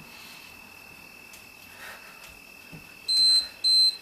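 Interval timer beeping twice near the end, two loud high-pitched electronic beeps of about half a second each, signalling the end of a 45-second work interval.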